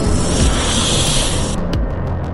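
A snake's hiss for about a second and a half, then cutting off, over background music.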